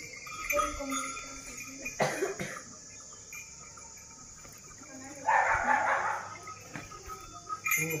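Low talk of several men at close range, with a sharp click about two seconds in and a short, loud breathy rush of noise a little after five seconds.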